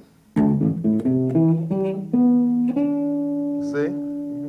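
Electric bass guitar played with the fingers: a quick run of about eight notes climbing the scale in thirds, ending on a held note that rings on to the end.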